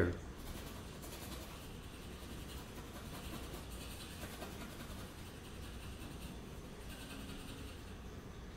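Faint scratching of a paintbrush working oil paint into canvas, feathering two colours together with light strokes, over a steady low room hum.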